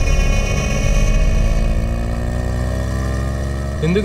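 Motorcycle engines running, their pitch rising slowly and steadily as they accelerate.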